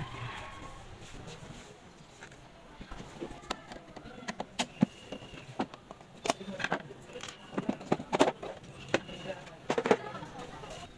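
Scattered light clicks and knocks from hands handling the plastic casings, wiring and supply cord of opened multipoint electric water heaters. The clicks come more often in the second half.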